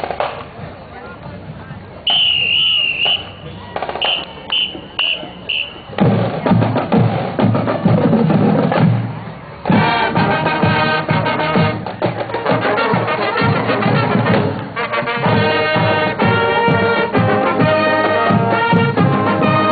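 High school marching band starting to play: a whistle gives one long blast about two seconds in, then four short ones. The drumline comes in about six seconds in, and the brass and woodwinds join with the tune at about ten seconds.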